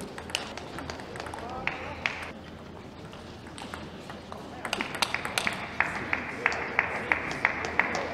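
Sharp clicks of a table tennis ball in the first two seconds. From about five seconds in, spectators applaud with sharp claps about three times a second, over a murmur of voices.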